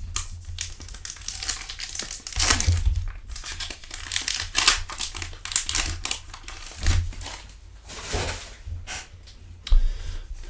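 Trading-card pack wrapper crinkling as it is torn open and peeled off the stack of cards, with short crackles throughout and cards being handled.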